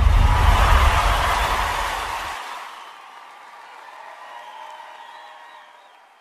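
Concert audience applauding and cheering after a song, fading away over a few seconds. A low rumble lies under it and stops suddenly about two and a half seconds in.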